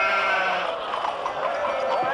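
Sheep bleating, with overlapping calls.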